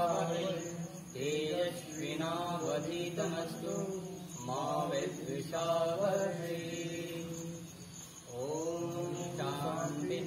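Voices chanting a Sanskrit mantra in slow, sustained phrases with short pauses between them, over a steady low hum.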